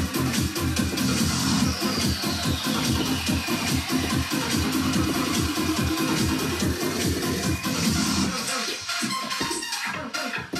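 Upbeat electronic dance music with a steady, fast beat; the bass drops away about eight and a half seconds in.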